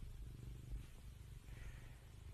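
Tabby cat purring softly, a low, steady, fast-pulsing rumble.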